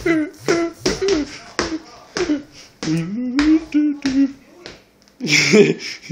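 A voice scat-singing nonsense syllables like "doo bee doop" in short, bouncy notes, about two a second, each starting with a sharp click; about five seconds in comes a louder, rougher burst of voice.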